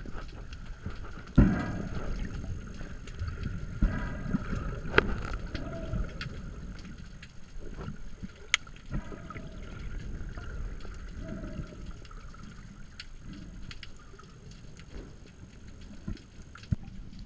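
Underwater sound picked up through an action camera's waterproof housing: a muffled, low churning of moving water with scattered clicks and knocks, the loudest a knock about a second and a half in and a sharp click a little past the middle.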